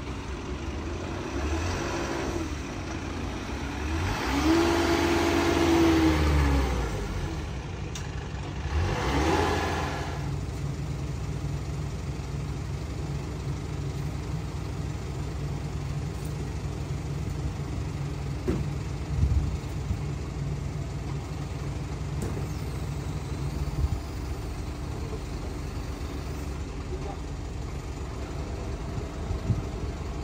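Crane truck engine running steadily, revving up three times in the first ten seconds, with a few short knocks later on.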